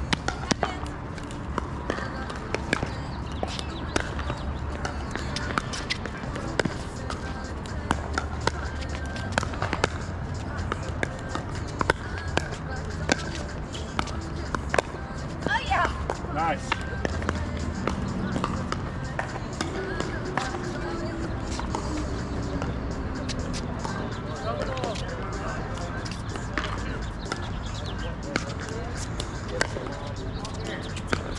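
Sharp, irregular pops of pickleball paddles hitting plastic balls, from this game and neighbouring courts, over a steady background of voices.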